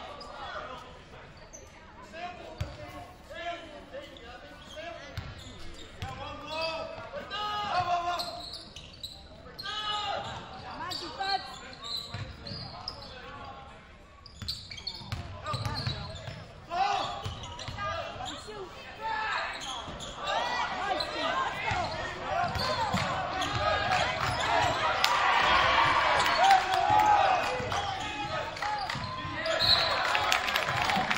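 Basketball game in a gym: the ball dribbling and bouncing on the hardwood court under a steady hubbub of players' and spectators' voices and shouts. The crowd noise grows louder about two-thirds of the way through.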